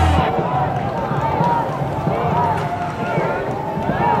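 Many people shouting and cheering at once, their voices overlapping with no clear words, during a dragon boat race.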